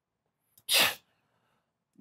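A man sneezes once: a single short, sharp burst of breath a little over half a second in.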